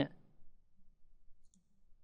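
A faint computer mouse click about one and a half seconds in, against quiet room tone.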